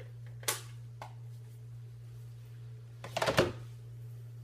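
Craft supplies being handled on a tabletop: one sharp click about half a second in, then a brief cluster of clatter and rattle about three seconds in, over a steady low hum.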